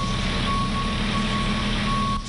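Utility bucket truck running, its engine a low steady rumble, with its high-pitched backup alarm beeping as it manoeuvres.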